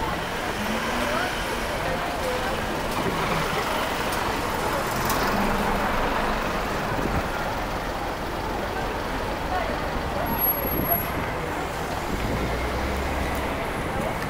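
City street traffic: cars and small trucks running along the road at low speed, with a deeper engine rumble near the end, mixed with the chatter of passers-by.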